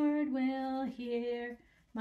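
A woman singing a children's song unaccompanied, holding long, steady notes, with a short pause for breath just before the end.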